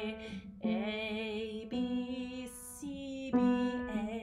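A woman singing a slow, haunting minor melody on the notes A, B and C, each held about a second with a slight waver, with a breath about two and a half seconds in.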